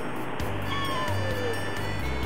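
Siamese-mix cat giving one soft meow that falls in pitch, about a second in.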